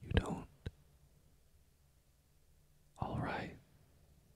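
Close-up mouth sounds from a man: a short, wet smacking kiss at the start with a small click just after it, then a soft, breathy sound about three seconds in, as he kisses and marks the listener's neck.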